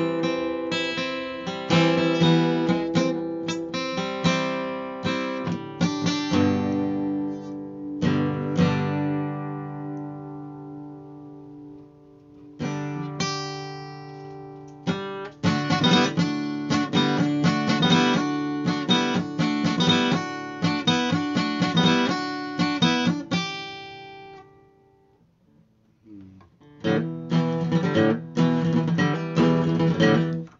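Acoustic guitar being played: chords struck and left to ring, one fading away slowly in the first half, then a busier run of playing. The playing stops for a couple of seconds and starts again near the end.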